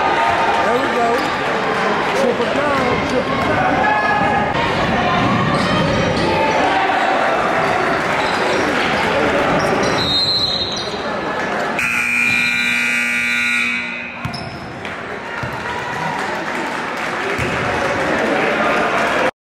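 Gymnasium crowd noise with many overlapping voices and a basketball being bounced. About twelve seconds in, the scoreboard buzzer sounds one steady tone for about two seconds, marking the end of the game.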